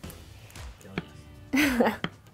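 A metal ice cream scoop dipping into a bowl of thick cake batter, with one sharp click about a second in. A short vocal sound from a woman just before the end is the loudest thing.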